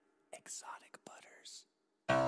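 Whispered vocal in a few short breathy phrases, the whispered intro of a phonk song.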